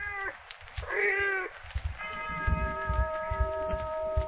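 A cat meowing twice, a short meow and then a longer one, as a radio-drama sound effect. About halfway through, a steady held musical note comes in.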